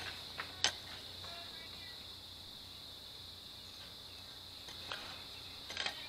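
A steady, high-pitched chorus of insects, with a few scattered knocks of a hoe blade chopping into dry garden soil, the sharpest about half a second in and a couple more near the end.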